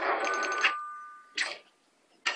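A ringing, bell-like sound effect: a sudden ring holding two steady tones that fade out over about a second, followed by a short second burst.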